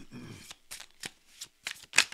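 A deck of tarot cards being shuffled by hand: a run of short riffling strokes, the loudest near the end.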